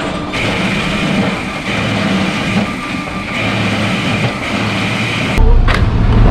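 Loud, steady rumbling noise of ice-plant machinery, mixed with music. A heavy bass beat comes in near the end.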